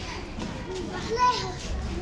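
Children's voices talking and calling out, high-pitched, with one louder call a little over a second in.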